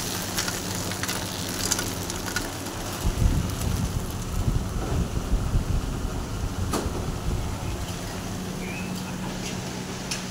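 Batasa-making machine running with a steady low hum, with scattered light clicks of hard gur batasa drops. A rougher low rumble runs from about three to six seconds in.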